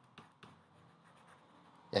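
A few faint short taps of a stylus marking on a tablet, otherwise near quiet; a man's voice starts right at the end.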